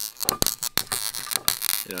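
Handling noise from the metal-shafted gun prod on a wooden table: scraping hiss and a few sharp clicks.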